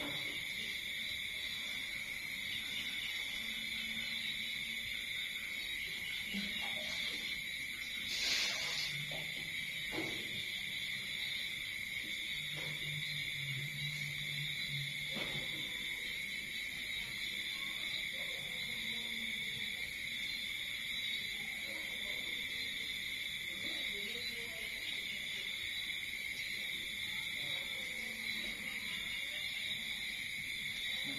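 Steady chorus of night insects, crickets trilling without a break at two high pitches. A single brief noise comes about eight seconds in.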